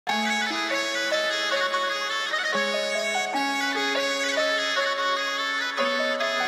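Opening of an ethnic-style drill instrumental: a solo folk-style wind-instrument melody of slow held notes over a lower moving line, with no drums or bass yet.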